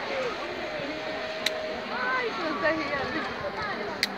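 People's voices talking and calling out, without clear words, with a short sharp click about one and a half seconds in.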